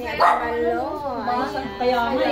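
A woman's voice in a drawn-out exclamation without clear words, the pitch rising and falling, then held on one long note.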